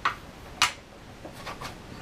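A few small clicks from thin wire and solder being handled by hand. The sharpest is about half a second in, followed by fainter ticks.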